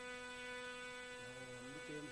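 A faint, steady low hum with a buzzy stack of overtones, holding at one pitch without a break.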